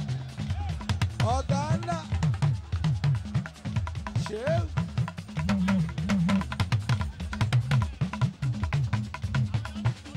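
Fuji band music playing live: dense, fast drumming with a moving low bass line, and a couple of short voice calls in the first half.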